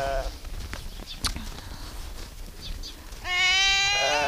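A sheep bleats once near the end: a single steady call lasting just under a second.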